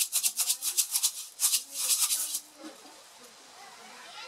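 Green gram (mung bean) seeds rattling inside a lidded clay pot shaken rapidly and evenly by hand, to wet every seed with the water added for seed treatment. The shaking stops about two and a half seconds in.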